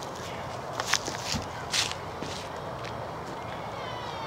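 A few footsteps, the loudest about a second and nearly two seconds in, over a steady outdoor background hiss.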